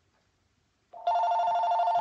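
A telephone ringing with a fast electronic trill, starting about a second in after a moment of silence.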